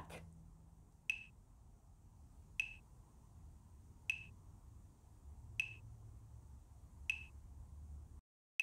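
Metronome-style click track: five short ticks, each with a brief high ring, evenly spaced about a second and a half apart, over a faint low hum.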